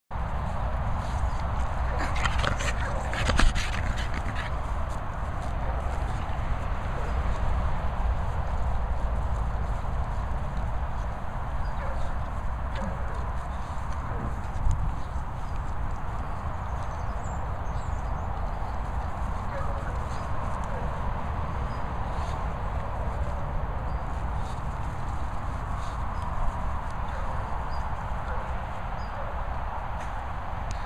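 Two Staffordshire bull terriers breathing and snuffling close to the microphone as they move about, over a steady low rumble of wind on the microphone, with a sharp knock about three and a half seconds in.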